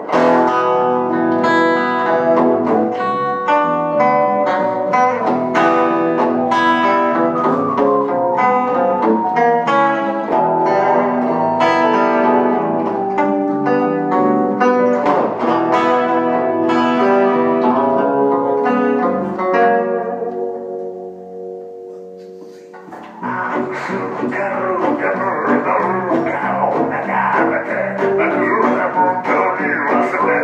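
Live music led by a guitar picking out a melody of ringing plucked notes. The music thins and dies down about 20 seconds in, then a denser, fuller passage starts up a few seconds later.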